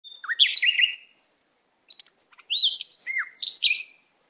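Small songbirds chirping: quick, high, gliding whistled calls in a burst of about a second, a pause of about a second, then a longer run of calls.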